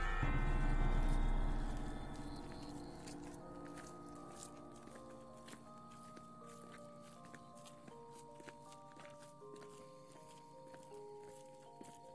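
Ambient background music of long held notes, loud at first and fading over the first few seconds into a quiet, slow melody. Scattered footsteps of people walking on a dirt road.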